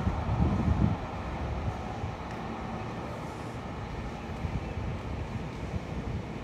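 Distant rolling rumble of a departing Keikyu New 1000 series electric train as it runs off into the distance. Gusts of wind buffet the microphone during the first second, then the sound settles to a steady low level.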